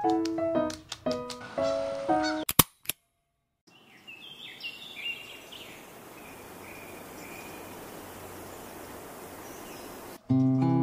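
Keyboard music that stops about two and a half seconds in with a couple of sharp clicks, then after a moment of silence a steady hiss of room ambience with birds chirping for a couple of seconds.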